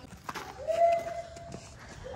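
A high voice holding one long, steady 'aaa' note for about a second, starting about half a second in, with faint footsteps on the ground around it.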